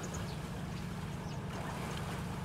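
Boat engine running steadily, a continuous low drone, under faint water and outdoor background sound.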